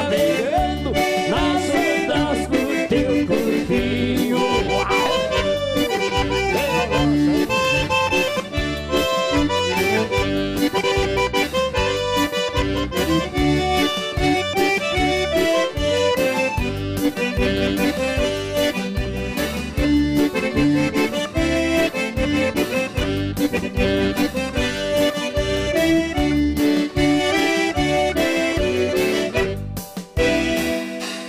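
Instrumental passage of bandinha dance music: a piano accordion plays the lively melody over keyboard backing and a steady, even bass beat.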